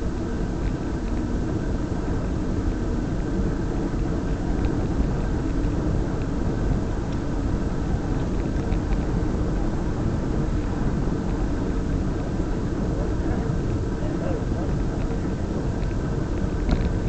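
Steady road and wind noise from a camera mounted on a moving vehicle: tyres rolling over asphalt with a constant low rumble and faint steady hum.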